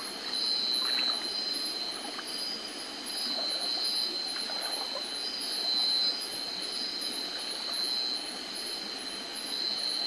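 Shallow stream water running and splashing as a person wades through it, with a few faint knocks of feet on stones. Over it, night insects keep up a steady high-pitched chirring that pulses a few times a second.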